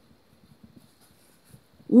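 Near silence: faint room tone in a pause of the reading, with a woman's voice starting only at the very end.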